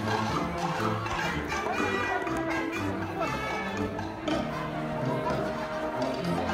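An orchestra playing, with held notes sounding together, over a background of crowd chatter.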